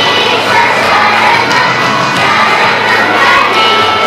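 A group of children singing loudly together in unison over a steady held accompanying tone.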